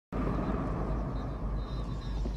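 Steady low drone of a starship interior's background ambience, with no distinct events. It follows a split-second dropout at the very start.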